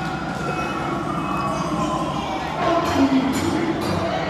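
Steady background hubbub of a busy indoor venue, with distant voices and faint music.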